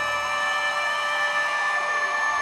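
A female singer holds one long high note into a microphone, steady with a slight vibrato near the end, over a ballad backing. The low accompaniment drops away about a second in.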